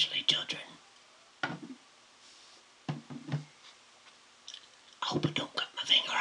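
A man whispering close to the microphone in short phrases, with quiet pauses between them.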